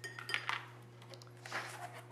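Light clicks and taps of a plastic lid palette and a drawing board being handled on a tabletop, with a brief rubbing sound about a second and a half in as the board is lifted and turned. A steady low hum runs underneath.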